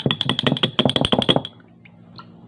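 Spoon tapping and scraping in a tub of ice cream while scooping: a quick run of about a dozen taps over a second and a half, then it stops.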